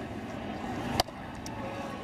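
Ballpark crowd murmur with one sharp pop about a second in as a four-seam fastball smacks into the catcher's mitt for a strike.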